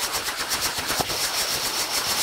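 Foley imitation of a distant helicopter: a steady, fast, even chopping pulse of about eight beats a second, like rotor blades heard from afar.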